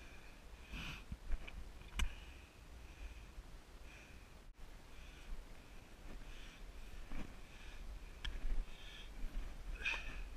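A hiker breathing hard and close to the microphone while scrambling up steep bare rock under a heavy pack, one breath about every second. A few sharp knocks come from hands, boots or gear striking the rock.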